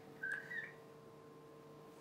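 A brief high-pitched squeak in two quick parts, rising slightly in pitch, a quarter of a second in, over a faint steady electrical hum.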